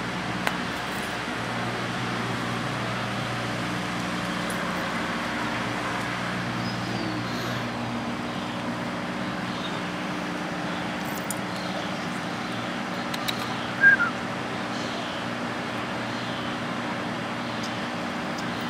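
Steady outdoor background noise with a constant low hum, like distant traffic or machinery, with a few faint chirps and one brief, louder squeak about two-thirds of the way through.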